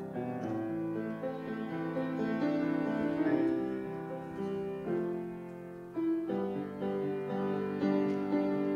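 Solo grand piano playing slow, sustained chords, the notes ringing on. The music dips briefly, then a fresh chord is struck about six seconds in.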